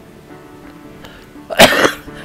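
An elderly man's single loud, harsh cough about one and a half seconds in.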